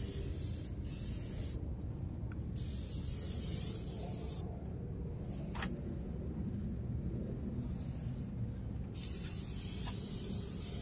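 Aerosol glass cleaner sprayed from the can in hissing bursts. One burst runs at the start, another about three seconds in, and a longer one begins near the end, over a steady low rumble.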